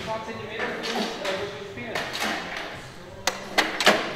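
Background music and voices, then three sharp clicks near the end as tools are handled on a workshop tool cart.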